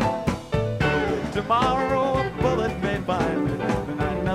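Live rock band playing a country song: an instrumental passage between sung lines. A wavering lead line with vibrato runs over steady bass notes and drums.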